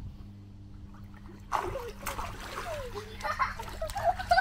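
Water splashing and sloshing in an inflatable hot tub as children move about in it, starting about a second and a half in and going on irregularly.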